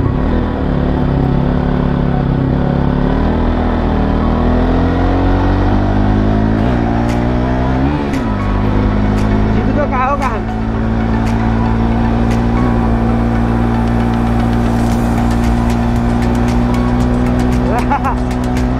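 Bajaj Pulsar NS200's single-cylinder engine accelerating hard through the gears: its pitch climbs, drops at each upshift (about three, seven and eight seconds in), then holds at a steady high cruise.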